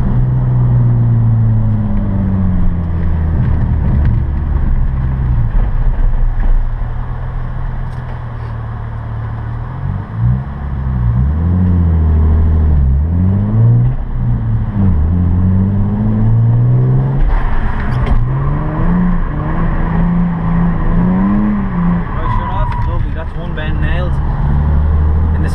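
Nissan 350Z's 3.5-litre V6, heard from inside the cabin while the car is driven through a drift course: the revs rise and fall again and again as the throttle is worked.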